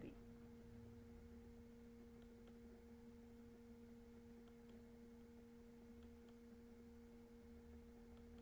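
Near silence: room tone with a faint, steady low hum of two even tones an octave apart.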